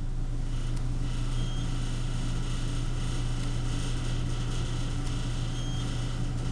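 Montgomery hydraulic elevator: a steady low hum with a faint hiss from inside the cab.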